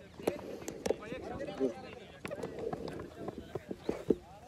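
Indistinct voices of cricket players calling out, with a few sharp knocks in between.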